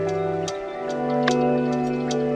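Lo-fi hip-hop beat: held chords that change about half a second in, over sharp ticking percussion.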